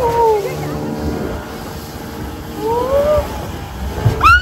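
Outboard-motor speedboat running fast, with steady engine, water and wind noise. Over it, passengers' whooping cries: one falling just at the start and one rising about three seconds in.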